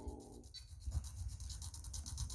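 Faint handling noise and a few soft button clicks from a RadioLink RC6GS V2 transmitter as its thumb buttons scroll through the setup menu, after the trailing end of a spoken word at the start.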